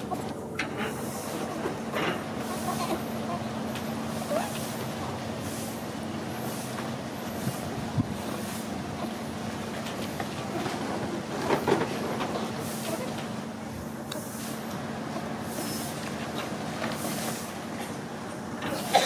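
A steady mechanical hum with a low, even drone running under a wash of background noise, with a few faint short sounds on top.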